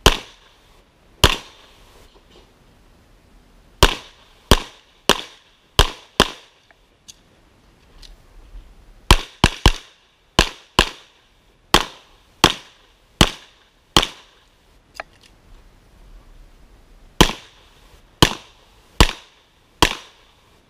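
Springfield XD(M) 5.25 pistol fired about twenty times through an IPSC course of fire: quick pairs and short strings of shots, with pauses of a second or more while the shooter moves to new positions.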